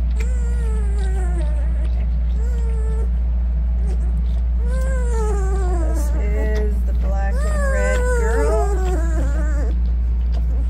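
One-week-old puppies whining and squealing in short cries that fall in pitch, several in a row and thickest near the end, over a steady low hum.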